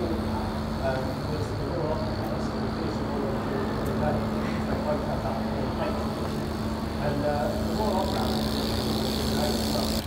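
Brompton T-Line's rear freewheel hub ticking as the bike rolls along on paving stones. The ratchet is loud, sounding like a road bike's.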